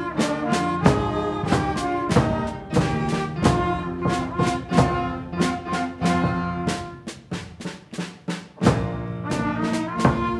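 A middle school concert band plays an overture-style piece: sustained brass and woodwind chords over regular drum strokes. About seven seconds in the band thins to a quieter passage, then comes back in full with a loud accent shortly before the end.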